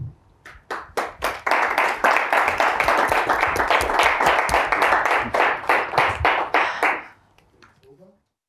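Applause: a few scattered hand claps that quickly swell into dense, steady clapping, which dies away about seven seconds in.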